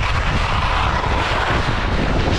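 Wind rushing over the action camera's microphone at speed, with the skis hissing and scraping over packed snow in a steep chute; the snow hiss swells in the middle.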